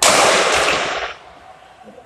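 A sudden, very loud bang of a gunshot picked up on a phone microphone, its noise lasting about a second before cutting off.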